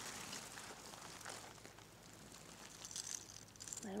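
Norway spruce boughs and needles rustling faintly as a hand pushes through them, with a few small crackles from twigs.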